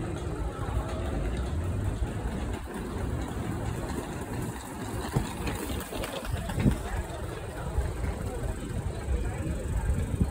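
City street noise: a steady low rumble of traffic and a passing tram, with people's voices mixed in.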